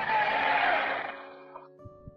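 Congregation shouting amen and applauding in answer to the preacher's call, a noisy wash that fades out over about a second and a half. It gives way to a quiet held chord of steady musical tones near the end.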